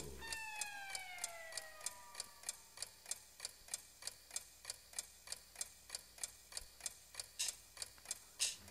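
A clock ticking faintly and evenly, about three ticks a second. Over the first two seconds a pitched tone glides downward and fades out.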